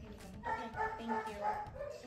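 Fox Terrier–Staffordshire mix dog whining and yipping in excitement, in repeated drawn-out vocalizations.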